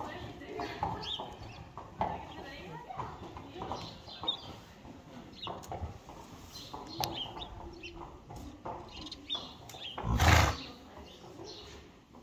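Barn sounds of young horses at the stall bars: faint voices and scattered small knocks, then, about ten seconds in, one short, loud, noisy snort from a young horse sniffing at a hand.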